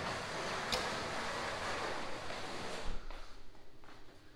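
A steady rushing, rustling noise with a single sharp click a little under a second in and a low thump near three seconds, after which it goes quieter.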